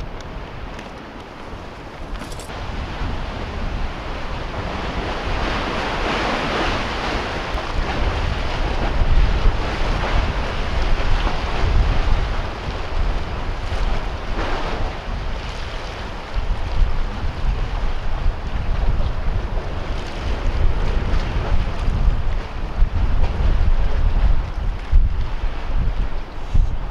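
Wind buffeting the microphone in gusts over sea waves washing against concrete breakwater blocks, the water noise swelling up several times.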